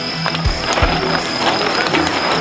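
A pack of mountain bikes rolling off together at a mass start, with a clattering rush of tyres and clicking freewheels, under loud rock music with two low drum thumps in the first second.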